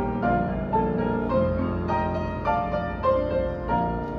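Piano playing a hymn introduction: a melody over chords, with a new note struck about every half second, setting up the congregation's part-singing.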